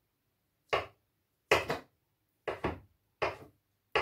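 Knife chopping boiled egg on a wooden cutting board: about five short, sharp chops, roughly one a second and unevenly spaced, a couple of them doubled.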